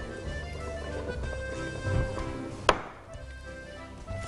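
Background music with steady sustained notes, and a single sharp knock about two-thirds of the way through.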